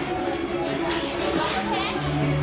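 Indistinct voices talking, with a high, wavering voice near the end.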